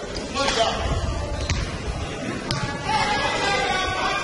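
A basketball being dribbled on a hardwood gym floor: a few sharp bounces about a second apart, ringing in the large hall, over background voices.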